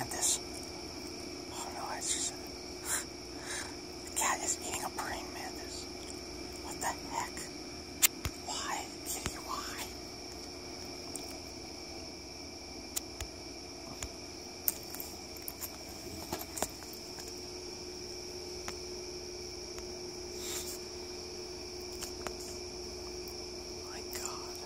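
A cat chewing a praying mantis: irregular small crunches and wet mouth clicks, close together for the first ten seconds or so, then sparser.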